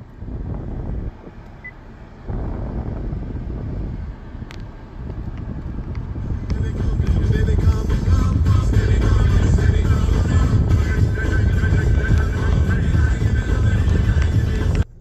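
Car stereo's FM radio playing music, coming on in short stretches with gaps over the first few seconds, then turned up and playing steadily louder from about six seconds in.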